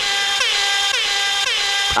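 DJ air horn sound effect sounding in quick repeats, about four blasts, each ending with a downward slide in pitch.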